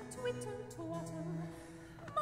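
Baroque continuo of cello and harpsichord playing a short instrumental passage between sung lines, with the cello holding steady low notes. It grows quieter near the end.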